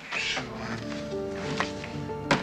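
Background music: a dramatic score cue comes in suddenly at the start with a short swell, then settles into held chords that shift in pitch.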